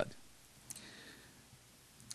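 A pause in a man's speech: low room tone with one short, sharp click about two-thirds of a second in, followed by a faint brief hiss.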